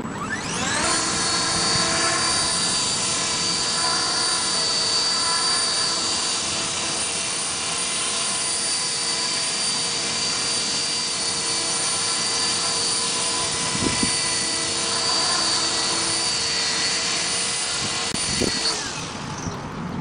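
Esky Belt CP electric RC helicopter spinning up with a rising whine, then running steadily in a low hover with a high-pitched motor whine and rotor noise, before winding down near the end. Two brief knocks come in the second half.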